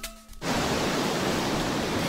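Steady rushing noise of strong wind on the microphone mixed with surf, starting about half a second in after a music note ends.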